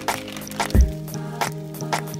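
Hip hop instrumental beat with a sustained low synth note, a deep kick drum hit a little under a second in, and crisp snare hits.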